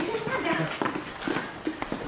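Footsteps on a hard floor, a few sharp clicking steps in the second half, under spoken dialogue.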